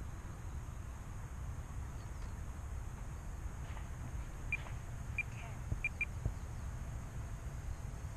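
Low, steady wind rumble on the microphone, with four short high-pitched chirps around the middle.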